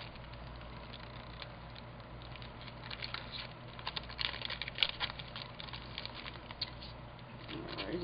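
Clear plastic stamp packaging crinkling and crackling as it is handled, a quick run of small clicks starting about three seconds in, over a low steady hum.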